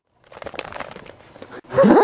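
Crackling, crinkling noise with many small clicks. Near the end a loud voice cry starts, bending up and down in pitch.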